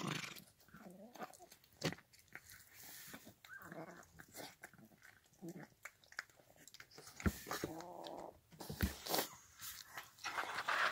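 Cat eating wet canned food from a steel bowl: a rapid, irregular run of wet smacking and chewing clicks as it laps and bites, with a few short pitched sounds in between.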